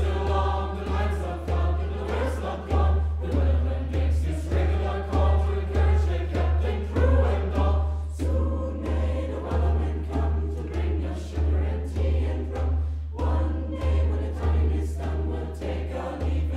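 A mixed youth choir of girls' and boys' voices singing together, over a steady low beat of about three pulses every two seconds.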